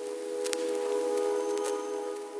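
Electronic logo-intro music: a held synth chord, with two short glitchy clicks, one about half a second in and one near the end.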